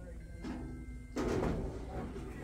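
Mostly speech: a woman says a single word over a steady low hum of the room, with a faint steady tone just before she speaks.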